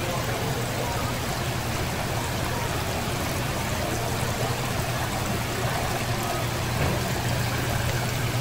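Water pouring and splashing steadily into a live crab tank from a row of inflow spouts, with a steady low hum underneath.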